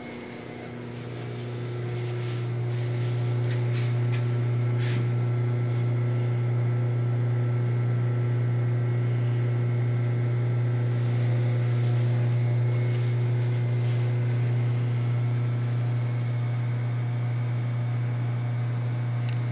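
A machine motor running with a steady low hum, growing louder over the first two or three seconds and then holding level.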